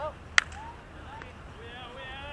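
A single sharp crack a little under half a second in, a ball striking a bat or a glove in a baseball game, with a much fainter click after it. Distant players' voices call out across the field.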